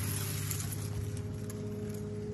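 Steady machine hum with a constant mid-pitched tone over a low drone, unchanging throughout.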